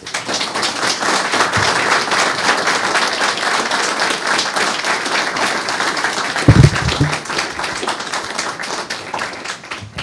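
Audience applauding, a dense steady clatter of many hands that starts at once and thins out near the end. A single low thump about six and a half seconds in stands out above it.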